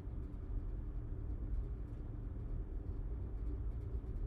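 Low, steady outdoor rumble of field ambience with a few faint ticks.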